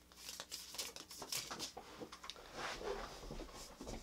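A tarot deck being shuffled by hand: soft papery rustling with many small, irregular flicks and taps of the cards.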